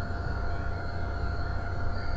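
Steady low hum and hiss with faint, thin whining tones held at a constant pitch: the background noise of the recording setup.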